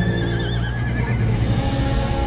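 A horse whinnying once, a wavering call of about a second at the start, over steady background music.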